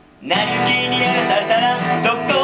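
Singing with acoustic guitar accompaniment, coming back in after a brief pause about a quarter second in.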